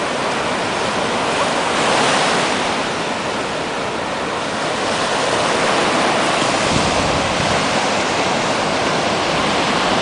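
Ocean surf breaking and washing up the beach: a steady rush that swells and eases as the waves come in.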